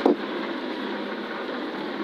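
Steady cabin noise of a Subaru Impreza Group N rally car at speed on wet tarmac: its turbocharged flat-four engine running under the rush of tyres and spray.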